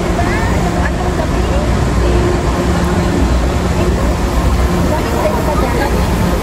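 Airport terminal hall ambience: a loud, steady rumble and hum with scattered distant voices of travellers.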